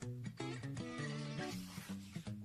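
Soft background music, a simple melody of short notes, with a paper book page being turned near the end.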